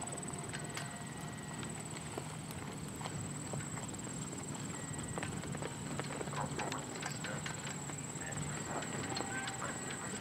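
A horse's hoofbeats trotting on arena footing, over a steady high whine, with faint voices in the background.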